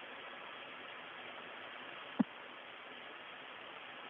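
Steady static hiss on the Soyuz space-to-ground radio loop between transmissions, with a single short click about two seconds in.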